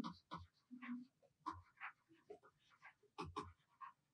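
Near silence, broken by a few faint short taps from a stylus writing on a pen tablet.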